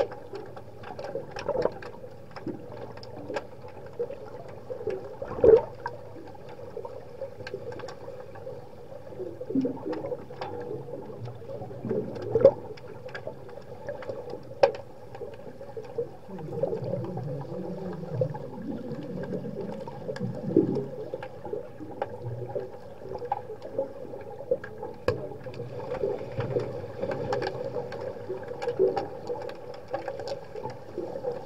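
Underwater sound of an underwater hockey game in a tiled pool, heard through the water: a steady hum with many sharp clicks and knocks, two louder knocks about five and twelve seconds in. About sixteen to twenty-one seconds in there is a rougher rush of water noise as a finned player swims close past.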